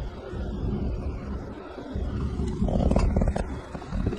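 Low rumble inside a moving car's cabin, with a few short clicks about two and a half to three and a half seconds in.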